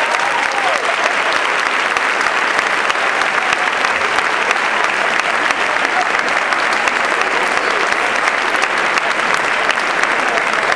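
Audience applauding steadily throughout, with a few voices calling out over the clapping near the start.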